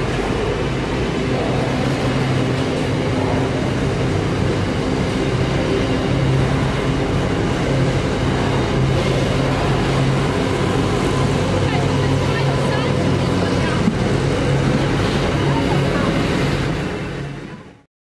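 Container freight train wagons rolling past at close range: a steady rumble of steel wheels on the rails with a low steady hum, fading out quickly near the end.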